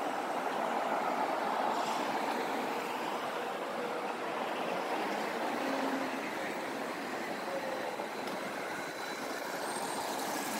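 Passing road traffic on a city street: a steady wash of tyre and engine noise from cars going by, swelling about a second or two in.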